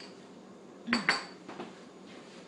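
A drinking glass set down on a kitchen countertop: two sharp clinks close together about a second in, with a brief ring, followed by a few lighter taps.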